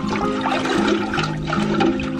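Water swirling and sloshing as a hand stirs it around inside a bin, under background music.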